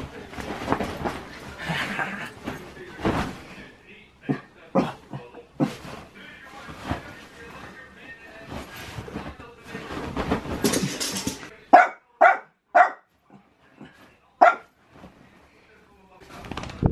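Small dog barking in rough play, with rustling of bedding through the first part and four short, sharp barks near the end.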